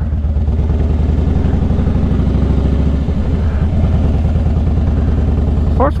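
Motorcycle engine idling steadily with an even, rapid low pulse.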